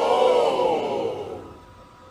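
A long, drawn-out vocal sound whose pitch rises and then falls, fading out about a second and a half in.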